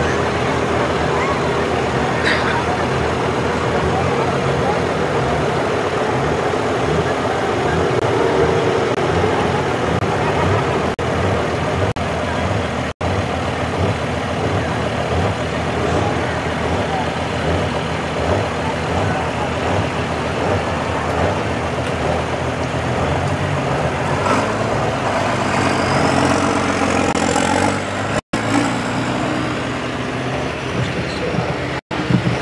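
Diesel Ford Super Duty pickup pulling a weight sled, its engine running hard and loud throughout. A high whistle rises and then falls near the end.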